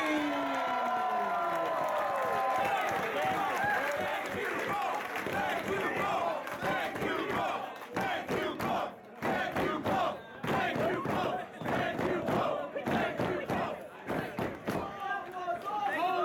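Pro wrestling crowd shouting and cheering for the winner of the match, many voices at once. The noise runs steady at first, then turns choppier with brief lulls about halfway through.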